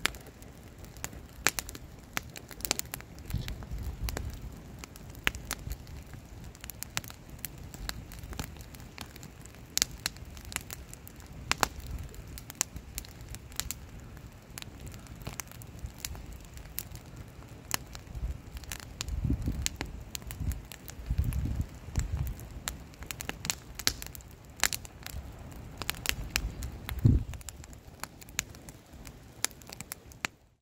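Wood campfire of split logs and branches burning, crackling with frequent irregular sharp pops and snaps and a few low rushing swells.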